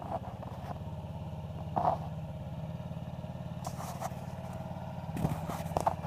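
Honda Ruckus scooter's small 49cc four-stroke single-cylinder engine running steadily at a low, even speed, with a few short knocks over it.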